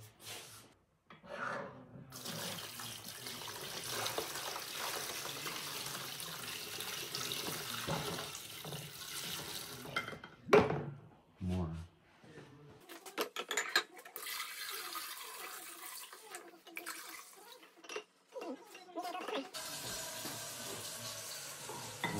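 A tap running water into a stainless steel bowl, then one loud metallic clunk about ten seconds in. After that, water is poured from the bowl into a plastic tub of jars to fill a sous vide water bath.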